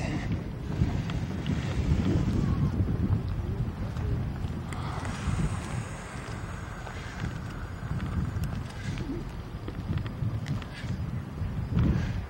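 Wind buffeting the camera's microphone: an uneven low rumble, with a fainter hiss rising in the middle and easing off.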